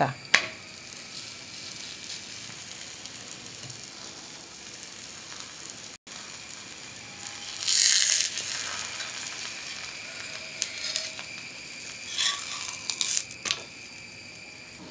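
A paratha sizzling on a hot flat griddle (tawa): a loud burst of sizzling about halfway through as the dough meets the hot, oiled surface, over a steady faint hiss. A few light spatula clicks and scrapes follow near the end.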